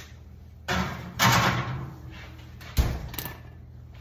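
A baking dish is slid into an oven and the rack pushed in, a scraping, sliding noise over about a second, then the oven door shuts with one sharp knock near three seconds in.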